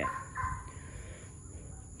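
Quiet outdoor background with a steady high-pitched drone, and a brief faint call about half a second in.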